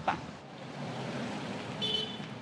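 Street ambience: a steady hiss of passing traffic, with a brief high-pitched tone near the end.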